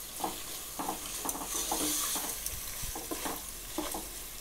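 Sliced onions and ginger-garlic paste sizzling in hot oil in a nonstick pot while a spatula stirs them, giving short scraping strokes about two or three times a second over a steady hiss.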